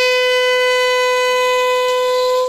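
A bugle holding one long, steady note of a funeral bugle call, sounded as part of a police guard of honour's salute at a state funeral.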